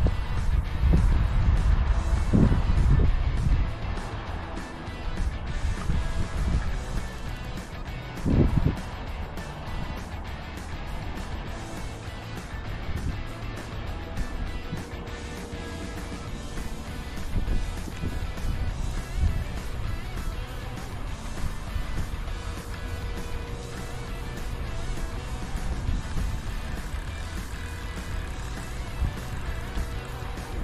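Low rumble of wind on the microphone, heaviest in the first few seconds, with quiet music underneath.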